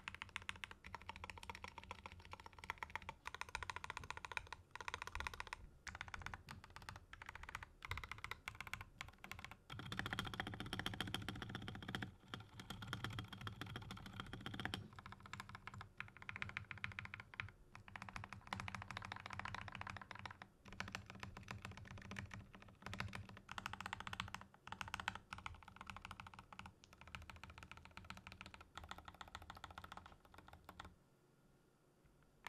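Typing on a Feker IK75 75% mechanical keyboard built with lubed Novelkeys Silk Milkshake linear switches, tall MT3 keycaps, a steel plate and foam-filled case: a muted, deadened keystroke sound with little thock or clack. A stretch of faster, louder typing comes about a third of the way in.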